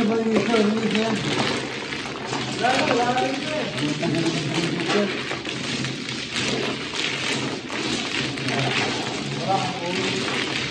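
A full set of mahjong tiles being shuffled by several pairs of hands on a mat-covered table: a continuous dense clatter of tiles clicking and sliding against one another.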